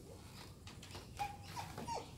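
A dog giving short, high whines, one held briefly and the others falling in pitch, after a few light clicks.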